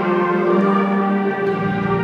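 School concert band playing, holding sustained chords that change pitch a couple of times.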